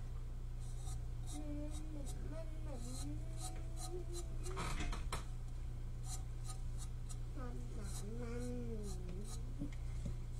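Hands handling craft materials at a work table: scattered small ticks and scratches, with a louder rasping, tearing noise about five seconds in. A low voice or humming comes and goes behind it, over a steady electrical hum.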